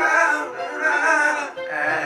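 Reggae song: a voice sings the word "bright" and carries on with held, wavering sung notes over the backing music.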